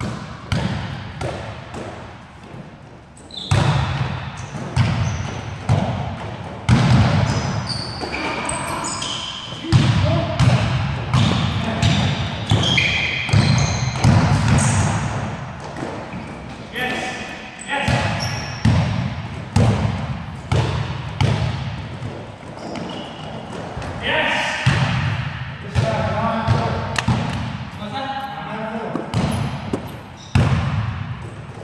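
A basketball bouncing and dribbling on a gym court, with short, sharp sneaker squeaks and players' voices echoing in a large hall.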